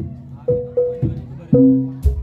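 Live gamelan accompaniment for a jaranan (kuda lumping) horse dance: struck metallophone tones ringing out and decaying in an even, repeating pattern, about two strokes a second.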